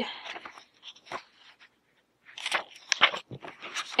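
A hardcover book in its dust jacket being handled and opened: a single light tap about a second in, then crisp paper rustling as the pages are turned in the second half.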